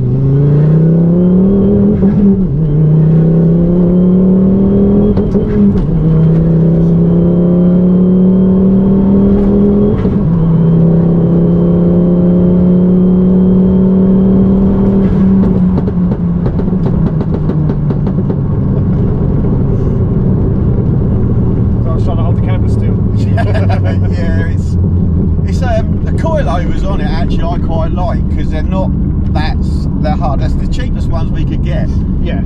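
Turbocharged five-cylinder Ford Focus ST engine heard from inside the cabin, accelerating hard through the gears: the note climbs and drops back at an upshift three or four times in the first ten seconds, holds steady, then falls away as the car slows. The engine will not rev past about 5,000 rpm, a fault that throws a knock-sensor code and that the owner puts down to a wiring or earthing problem.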